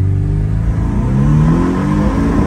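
Porsche Boxster engine accelerating hard, its note climbing steadily in pitch as the revs rise.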